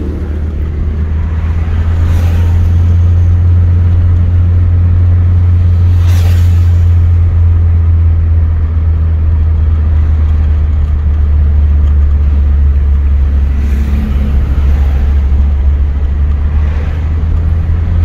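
Steady low drone of a car driving at road speed, heard from inside the cabin, with a few brief swells of noise as other vehicles pass.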